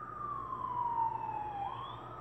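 A siren wailing: one tone falling slowly in pitch, then swinging back up near the end.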